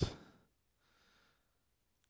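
A sharp click right at the start, then a man's faint breath, like a soft sigh, near the microphone.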